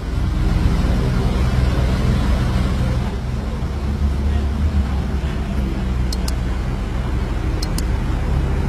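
Supercar engines idling: a steady low rumble over a broad wash of outdoor noise, with a few faint clicks late on.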